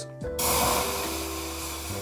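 White wine pouring from a bottle into a metal pan, a steady stream that starts about half a second in.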